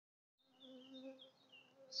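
Faint, steady buzzing of honeybees flying around their hives, starting about half a second in.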